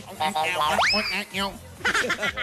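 A quick comic rising whistle sound effect about a second in, sweeping sharply up in pitch and then holding, over studio laughter and chatter.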